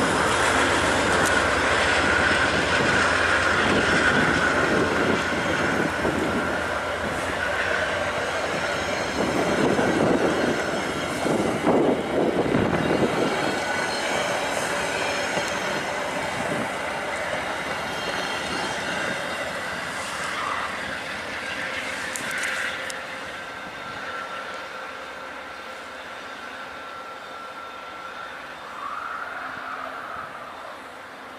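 VIA Rail LRC passenger cars rolling past, the wheels rumbling on the rails with a steady high-pitched wheel squeal. The sound fades over the second half as the train pulls away.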